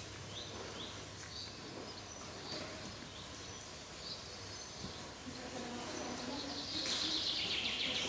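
Small birds chirping in short, high calls every second or so, growing louder and denser near the end, over a low murmur of voices.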